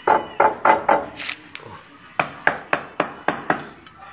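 A run of sharp knocks on porcelain floor tiles as they are worked loose and lifted: four quick knocks, one more, then about seven evenly spaced knocks, three or four a second. The tiles are coming up because they never bonded to the mortar, laid without double buttering.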